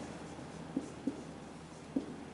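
Marker pen writing on a whiteboard: faint scratchy strokes with three small ticks as the tip meets the board.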